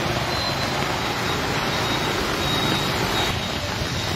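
Heavy rain and a vehicle driving through water on a flooded road close by, making a steady wash of noise.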